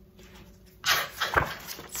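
A woman's short, breathy laugh about a second in.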